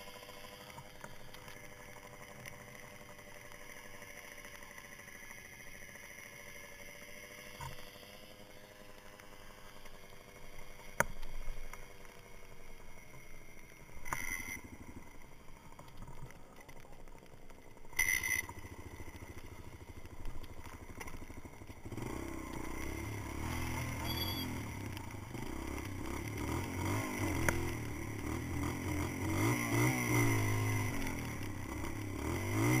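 Kawasaki dirt bike engine idling quietly, with a few sharp clunks and short blips of throttle. About two-thirds of the way in, the engine becomes louder and pulses as the bike pulls away and rides.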